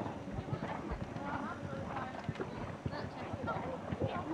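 Horse's hoofbeats on the sand arena footing, a run of irregular dull thuds, with voices talking indistinctly in the background.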